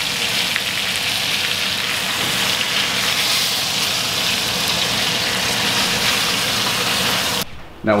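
Steaks and melted butter sizzling steadily in a hot cast-iron skillet, cutting off abruptly near the end.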